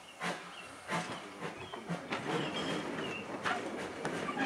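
Steam locomotive working a train, its exhaust chuffing in slow beats of about one and a half a second, heard from the brake van at the rear. Short bird chirps come between the beats.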